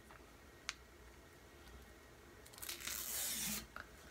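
A Crest 3D White whitening strip being peeled off its clear plastic liner: a short tearing rustle lasting about a second, after a single faint click.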